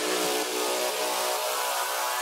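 Electronic dance music in a DJ mix at a transition: a wash of hiss-like noise over faint held tones, with the bass cut out about a quarter second in.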